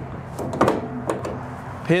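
Pins being set to lock an aluminum horse-trailer stall partition against the wall: a few short clicks and knocks in the first second or so.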